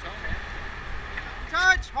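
A steady low rumble with a faint steady whine, then a man shouts a short call about one and a half seconds in.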